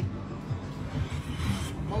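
Video slot machine's electronic spin sounds as its reels spin and stop one by one, with a low background rumble.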